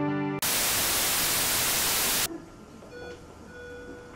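Music cuts out and a loud burst of static-like white noise follows, lasting about two seconds before it stops suddenly. Quieter background hiss follows, with a faint held tone near the end.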